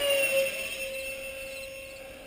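Electric ducted fan of a 64 mm RC F-18 jet whining as it flies past overhead. Its pitch drops in the first half-second as it passes, then holds steady while the sound fades away.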